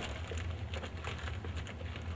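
Quiet room tone: a low steady hum with faint scattered clicks and rustles.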